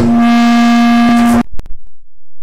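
A single loud, held musical note, steady in pitch like an organ or keyboard tone, that cuts off abruptly about one and a half seconds in, followed by a few faint clicks.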